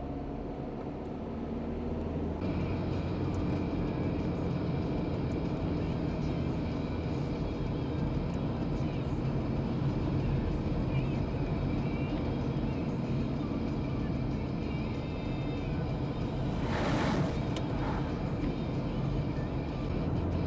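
Car cabin sound while driving on a wet road: steady engine and tyre noise. Its character changes about two seconds in, and a short burst of noise comes near the end.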